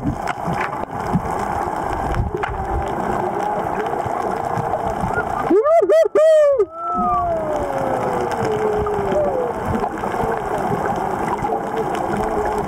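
Underwater rushing and gurgling of water around a snorkeler's camera. About five and a half seconds in comes a burst of muffled, rising-and-falling vocal squeals through the water, then one long falling cry.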